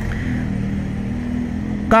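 Steady low mechanical hum with a rumble beneath it, running evenly through the pause; a spoken word begins at the very end.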